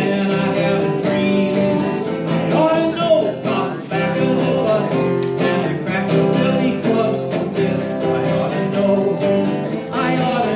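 A man singing a folk song while strumming an acoustic guitar.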